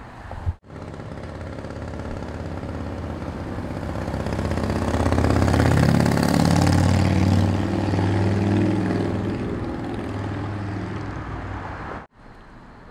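A motor vehicle driving past on the street, its engine and tyres growing louder to a peak about halfway through and then slowly fading. A brief sharp click comes about half a second in.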